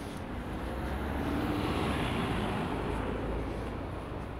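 A car driving past on the street, its noise swelling to a peak about halfway through and then fading.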